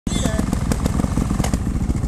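Trials motorcycle engine running steadily up close, a fast even low pulsing, with a brief voice at the very start.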